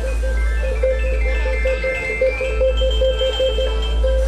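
Blues-rock band playing live, led by a Stratocaster-style electric guitar on a fast trilled lick that wavers rapidly around one note. Higher sustained notes step upward over it, with a steady low bass underneath.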